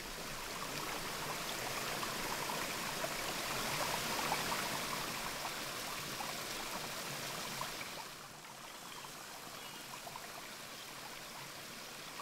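Water rushing steadily down a wooden trench (flume) that feeds a sawmill's water wheel, dropping somewhat in level about eight seconds in.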